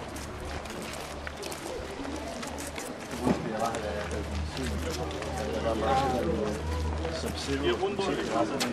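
Indistinct voices of people talking nearby, louder in the second half, over footsteps on cobblestones and a steady low rumble.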